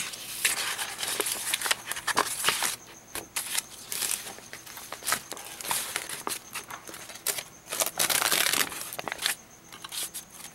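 Sheets of acrylic-painted paper prints being shuffled and flipped over by hand, rustling and crinkling in irregular bursts, with two louder spells of handling.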